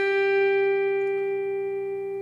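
Epiphone Les Paul electric guitar in open tuning, a single picked note on the fifth fret of the first string ringing out and slowly fading.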